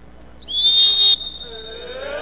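Referee's whistle: one short, sharp, high blast about half a second in, lasting well under a second and cut off abruptly.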